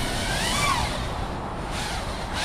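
FPV quadcopter's brushless motors and propellers whining, the pitch rising and falling once about half a second in, over a steady low rush of noise.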